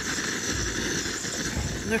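Steady rushing hiss of a gas canister camping stove burning under a pot, with wind rumbling on the microphone.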